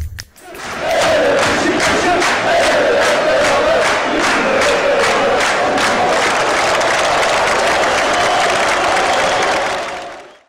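Large football crowd chanting in unison, with regular sharp beats about two or three a second, swelling in about half a second in and fading out near the end.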